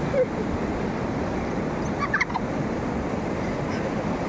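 Steady rush of river water pouring over a low weir, with a brief high warbling call about two seconds in.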